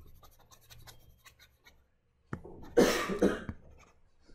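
A person coughs about two and a half seconds in, a short harsh burst that is the loudest sound here. Before it come faint light taps of a stylus on a tablet screen.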